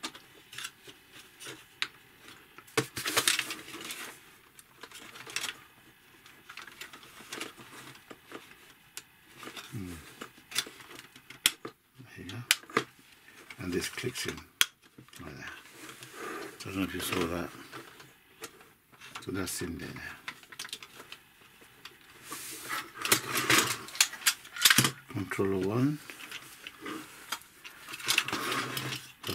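Hard plastic parts of a hydraulic robot arm kit clicking and rattling as they are handled and pushed into the plastic frame, with many short sharp clicks. A voice speaks briefly now and then.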